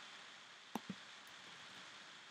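Faint steady room hiss with a single short click about three quarters of a second in.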